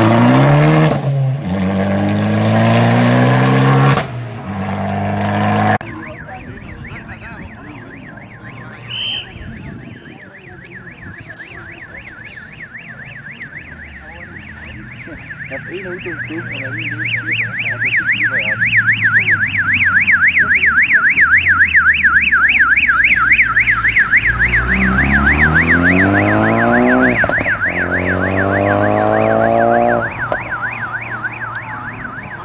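Abarth 500 rally car accelerating away hard, its engine pitch stepping up through gear changes, then fading about six seconds in. A fast warbling siren, about three to four sweeps a second, grows louder from about twelve seconds in. It is then joined near the end by a car engine revving up through the gears as the siren car passes.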